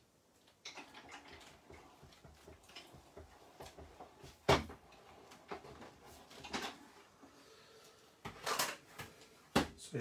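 Kaleido hot foil and die-cutting machine being hand-cranked, feeding a card with foil through its heated roller: a run of small plastic clicks and rattles with a few sharper knocks. Near the end comes a louder rustle and knock as the foiled card is taken out.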